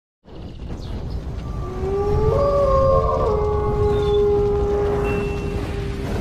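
Wolf howl sound effect over a deep rumble: a howl rises about two seconds in, briefly overlaps with other voices, then holds one long steady note.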